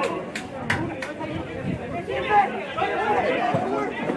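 Football spectators chatting near the camera, several voices overlapping, with a few sharp knocks in the first second.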